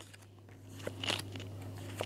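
Thick cardboard game cards being picked up off stacks on a wooden table: faint light scraping and a few soft clicks of card stock, most of them about a second in.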